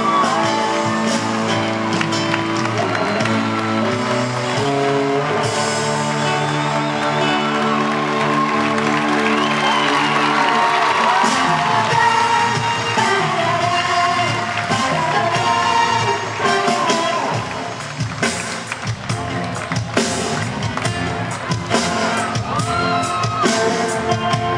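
Live band playing an instrumental concert intro in a large hall: sustained chords at first, with drums joining about halfway through. An audience cheers and whoops over the music.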